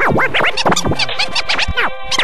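Turntable scratching in a hip-hop track: a record pushed back and forth in quick, uneven strokes, each a rising-and-falling sweep, over a steady held tone.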